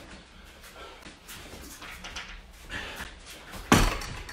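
Faint shuffling and rustling of a judo gi, belts and bare feet on foam mats during repeated shoulder-throw entries, with one short, loud thump near the end.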